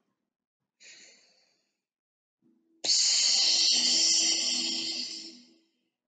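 A woman's deep breath: a faint, short breath in through the nose about a second in, then a long, loud sighing breath out through the mouth that starts abruptly and fades away over about three seconds, as in a deep-breathing relaxation exercise.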